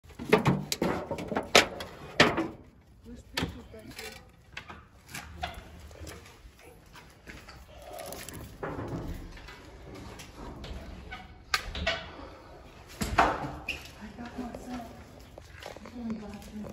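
Irregular sharp knocks and thuds: a quick run of them in the first two seconds, then a few more spaced out later. Faint, indistinct voices come in between.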